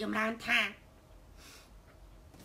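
A woman speaking briefly, then a pause of just over a second with only faint background hiss.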